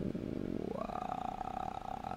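A man's long, drawn-out hesitation sound, a low held 'uhhh' while thinking, lasting the whole two seconds; its vowel opens up a little under a second in.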